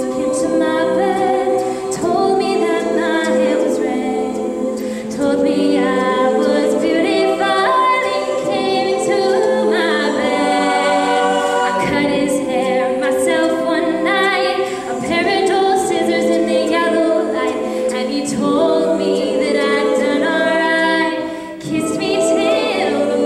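Mixed-voice a cappella group singing in close harmony with no instruments, the phrases running on with brief dips near the middle and just before the end.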